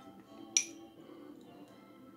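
A metal spoon clinks once against a small glass bowl about half a second in, a short ringing chink, over faint steady background music.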